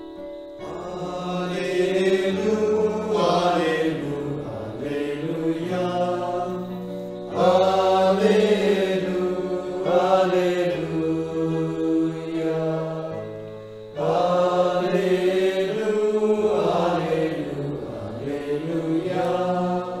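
A man singing a slow liturgical chant in long phrases, over held chords from an electronic keyboard that change every few seconds.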